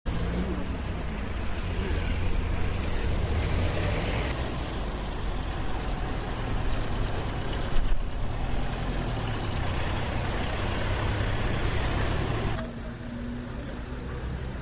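Heavy road vehicle running steadily, its engine rumbling low under broad road noise, with one sharp knock about eight seconds in; the loud noise cuts off suddenly near the end.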